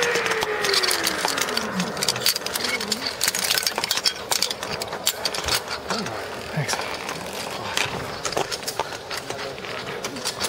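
Zip-line trolley whining along the steel cable, its pitch falling steadily over the first two seconds or so. Sharp metallic clicks and rattles of the cable and clips follow.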